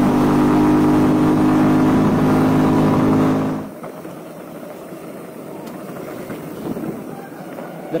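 Small motorcycle engine running at a steady cruising speed. About three and a half seconds in it gives way to a quieter, even rush of wind and tyres as a mountain bike rolls down a dirt trail.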